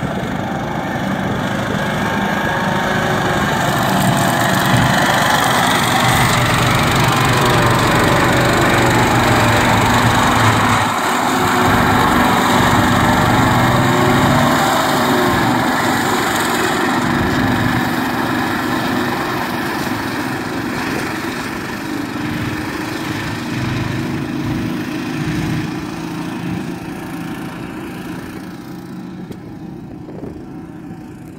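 ATV flail mower cutting rough grass: the mower's engine-driven flail rotor and the towing quad bike's engine running steadily. It is loudest as it passes close, a few seconds in until about halfway, then fades as it moves away.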